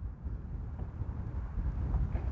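Wind buffeting the lapel microphone outdoors, an uneven low rumble.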